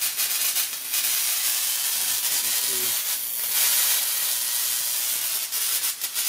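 Spark gap of a Lakhovsky multiple wave oscillator firing continuously after being turned up to full power: a steady high hiss and sizzle that swells a little midway, with a faint low hum underneath.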